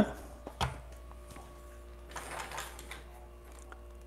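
Quiet kitchen with light handling sounds: a couple of small clicks about half a second in and a brief soft rustle about two seconds in, over a faint steady hum.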